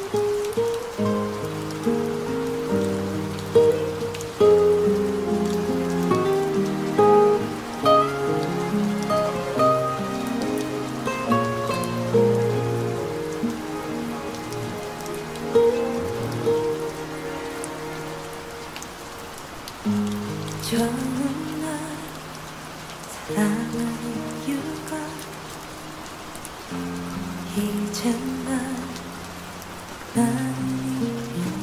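Steady recorded rain with raindrops, mixed over the opening of a slow Korean pop ballad with sustained chords and a melody on top.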